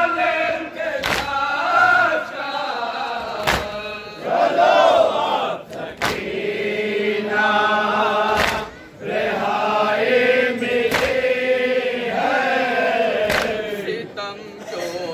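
A crowd of men chanting a noha (Shia lament) together, cut by loud unison matam chest-beating slaps. The slaps land as single sharp claps about every two and a half seconds, six times.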